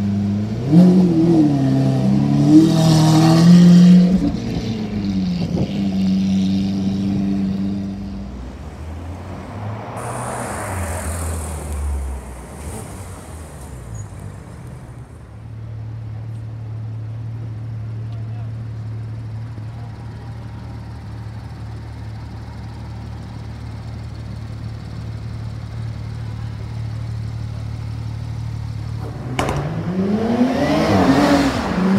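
Lamborghini Aventador V12 running with its revs blipped up and down for the first few seconds, followed by a brief rush of noise from a passing vehicle. The idle of a Porsche 911 GT3 RS flat-six then holds steady, and near the end another car begins to accelerate with rising revs.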